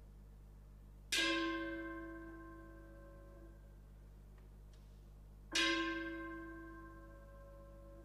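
A bell-like metal percussion instrument struck twice, about four seconds apart, each stroke ringing with several clashing overtones and slowly fading away.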